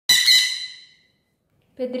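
A conure's single loud, harsh squawk at the very start, fading away over about a second.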